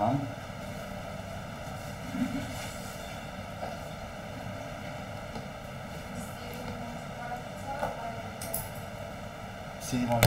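Steady background hiss and hum of a computer microphone in a pause between a teacher's words, with a few faint, brief voice sounds.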